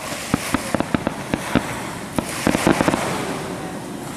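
Fireworks going off: an irregular run of sharp pops and crackles, thickest in the first second and a half and again about two and a half seconds in.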